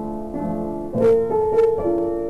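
Slow, gentle piano music. Sustained notes and chords ring on as new ones are struck every half second or so, with a louder chord about a second in.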